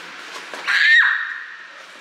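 A child's short, high-pitched excited squeal, held for about half a second and dropping in pitch as it ends, a little past halfway through.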